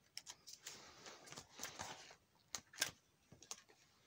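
Plastic card-sleeve pages in a ring binder being turned: a soft rustle of the plastic, then a few sharp clicks and ticks as the page settles.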